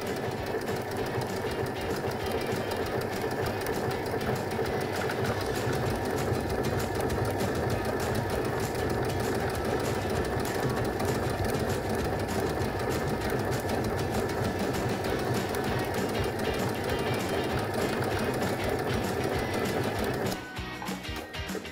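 Baby Lock Brilliant sewing machine running steadily at a constant speed, sewing a triple straight stitch, then stopping right at the end.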